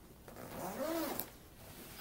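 A zipper on a fabric backpack, the carrying pack of a GoPro Karma drone, pulled once for about a second.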